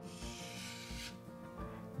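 The end of a thin wooden deck piece rubbed across sandpaper to round it off: one gritty stroke lasting about a second. Quiet background music runs underneath.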